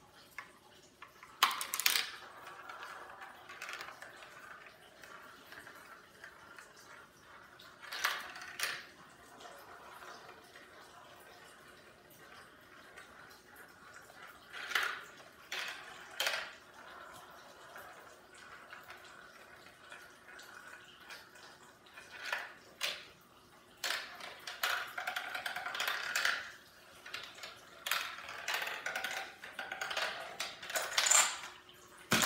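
Marbles rolling and rattling through plastic marble-run tubes and tracks, with sharp clicks as they drop and strike the plastic pieces; the clicks come every few seconds, then crowd together in the last several seconds.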